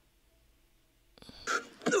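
Near silence for about a second, then a film soundtrack: a man's loud, noisy grunt building over the last second.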